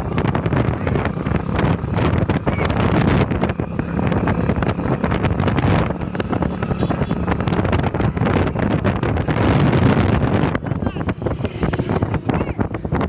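Motorcycle engine running steadily while riding alongside, with heavy wind buffeting the microphone.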